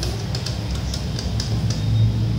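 ATM keypad pressed several times in a row to enter a six-digit PIN, each key giving a short high beep, over a steady low hum.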